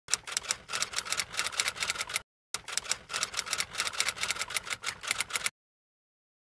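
Typewriter key-clacking sound effect: fast runs of sharp clicks, about seven a second, broken by a short pause about two seconds in, and cutting off suddenly about half a second before the end.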